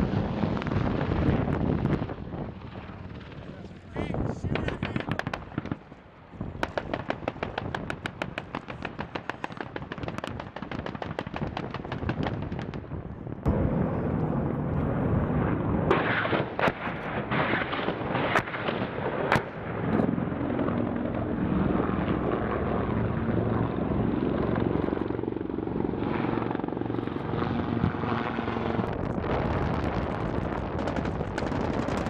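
AH-1Z Viper attack helicopter flying, its rotor beating in a fast, even pulse, amid outdoor gunfire, with several sharp cracks a little past the middle.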